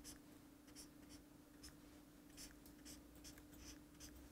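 Faint scratching of a highlighter's felt tip drawn across paper in a series of short strokes, over a faint steady hum.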